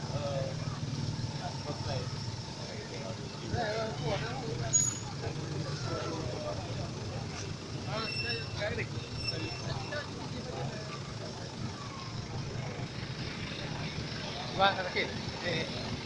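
A parked fire truck's engine idling steadily, a low hum, with scattered voices of people talking over it.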